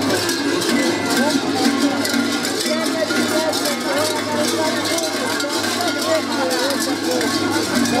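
Many large bells clanging continuously and unevenly, shaken on the belts of dancers in sheepskin costumes, over crowd voices and music.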